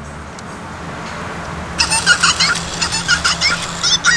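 My Partner Pikachu interactive toy answering in its electronic Pikachu voice through its small speaker: a quick, choppy run of high-pitched voice clips starting a little under two seconds in.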